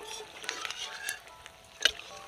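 Hot oil sizzling as rice-flour kurkure sticks deep-fry in a metal wok, while a perforated metal skimmer scrapes and stirs through them. Near the end the skimmer gives one sharp clink against the wok.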